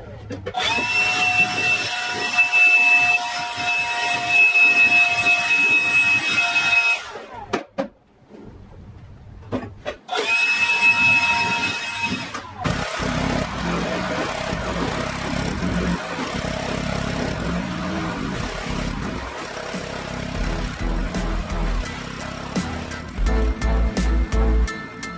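Cordless battery leaf blower spinning up to a steady high-pitched whine, running about six seconds and cutting off, then a second shorter run, blowing crumbled old foam padding out of bucket racing seats. A steady rushing noise fills the rest.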